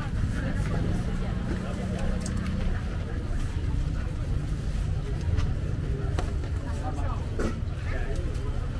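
Busy market crowd ambience: many people talking over one another, over a steady low rumble, with a few light clicks.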